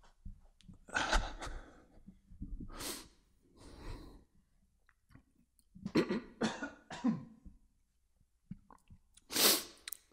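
A man coughing, clearing his throat and breathing hard into a close microphone in about five short bursts, the loudest a sharp huff near the end.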